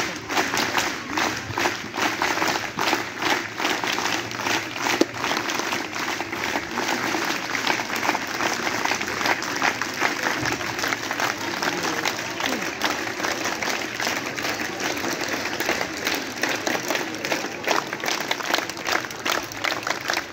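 A crowd clapping steadily and continuously, many hands at once, with voices mixed in.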